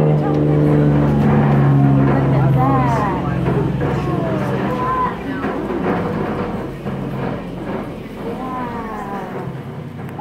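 Engine of a cave tour tram running with a steady hum, under the overlapping voices of passengers talking. The engine hum is strongest for the first few seconds, then drops back.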